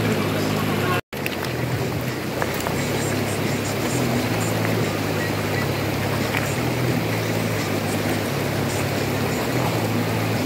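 Rushing river water over rocks with background music laid over it, its low notes changing every second or so; the sound cuts out completely for a moment about a second in.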